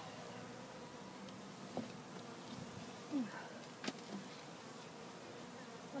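Honeybee colony buzzing inside a wooden hive box, a steady low hum heard close against the side of the hive, with a couple of faint clicks.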